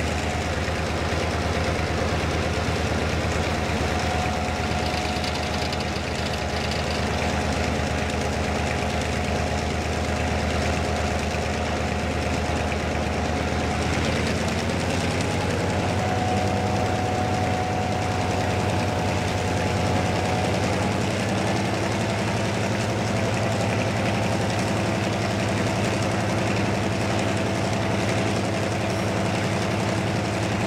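Engine of a Sri Lanka Railways Class M2 (EMD G12) diesel-electric locomotive, a two-stroke EMD diesel, running steadily under power as the train moves out of a station and gathers speed. Its note shifts about halfway through and sits slightly higher from then on, heard from the cab side.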